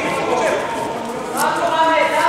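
Men's voices calling out and talking in a large, echoing sports hall, louder near the end.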